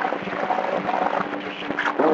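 CB radio channel noise: a steady hiss of static with a low hum underneath and faint, garbled fragments of voices breaking through.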